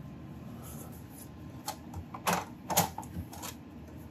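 Laminating pouches and paper sheets being handled on a tabletop, giving a short run of sharp plastic crinkles and taps, the two loudest close together about two and a half seconds in.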